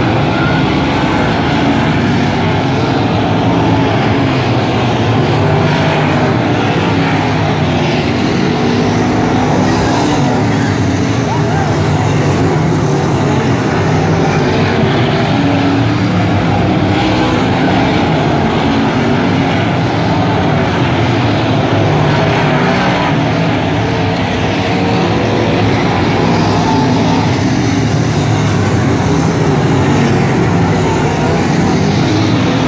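A pack of dirt modified race cars' V8 engines running hard around a dirt oval. The engines are loud and continuous, with several pitches overlapping and rising and falling as cars accelerate off the turns and pass.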